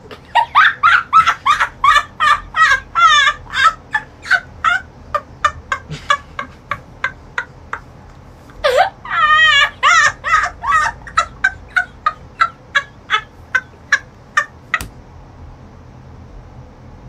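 A boy laughing hard in rapid, high-pitched 'ha-ha-ha' bursts, in two long runs of about four and six seconds with a pause of a few seconds between them.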